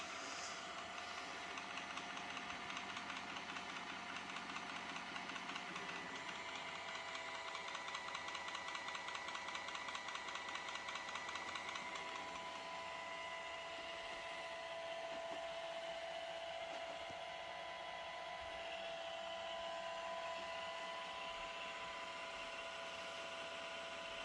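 An iRobot Roomba robot vacuum running on carpet gives a steady motor whine. For a stretch in the first half a fine rapid pulsing rides on top, while the robot turns and creeps about searching for its dock.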